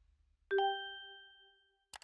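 A single bell-like ding sound effect, struck about half a second in and ringing out for over a second, then cut off by a short click near the end.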